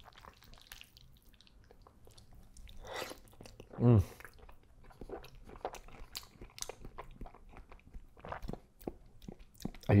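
Close-miked eating: a mouthful of thick wheat noodles and shrimp being chewed, with many soft wet clicks and smacks of the mouth, and a hummed "mmm" of approval about four seconds in.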